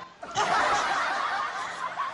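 Stifled laughter: snickering under the breath, starting about a third of a second in.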